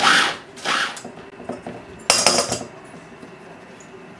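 Two short pulses of a Cuisinart mini food chopper chopping quartered mushrooms fine, in the first second. About two seconds in comes a brief clatter of kitchenware.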